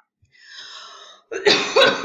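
A woman coughing and clearing her throat, with a soft breathy sound first and then a hard fit of coughs from about one and a half seconds in. She has a bit of a sniffle.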